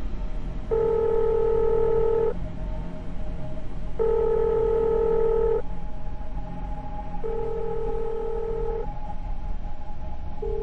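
Telephone ringback tone of an outgoing call: three long, steady rings of about a second and a half each, with pauses between, over a low background hum.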